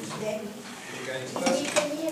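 Voices in a hall, with a few sharp clinks, like dishes or cutlery, about one and a half seconds in.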